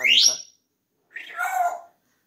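African grey parrot whistling a quick rising note, then, about a second later, a short pitched vocal sound.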